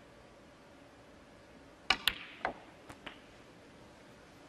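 Snooker balls on a match table as the black is potted: a sharp click of cue on cue ball about two seconds in, the cue ball clicking into the black a moment later, then a few lighter knocks as the black goes into the pocket and the balls settle.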